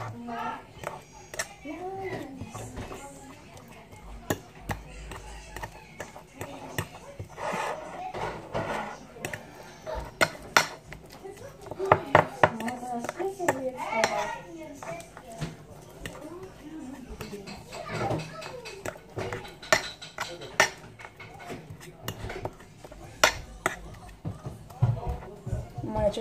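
Cutlery clicking and scraping against a plate, in irregular short taps, as banana is cut into pieces on it.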